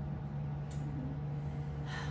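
Quiet room tone with a steady low hum, a faint voice murmuring about halfway through, and a breath drawn near the end.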